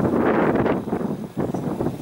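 Wind buffeting the microphone in irregular gusts, loudest in the first second.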